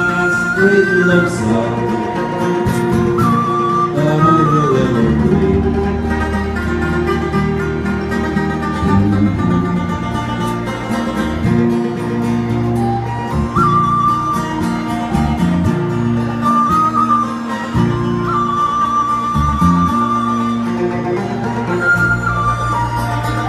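Live folk band playing an instrumental break: a tin whistle carries the melody, with trills, over acoustic guitar, banjo, mandolin and electric bass.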